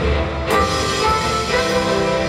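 Live rock band playing on stage: electric guitars, bass and drum kit, with a sharp crash about half a second in.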